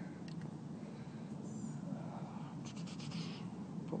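Faint rustling and scratching with a few soft clicks of a headset being handled and fitted, close on the microphone, over a steady low background hum; the scratchy handling sounds bunch together near the end.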